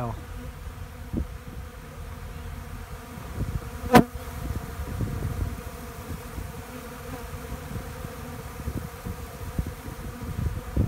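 A mass of honey bees buzzing as they forage on the ground in a steady hum. There is a single sharp click about four seconds in.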